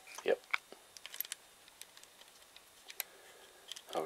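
Faint clicks and taps from fingers working the lens-release lever and bayonet mount of a Ricoh KR-5 35 mm SLR body with its lens off: a few in the first half second, then only scattered light ticks.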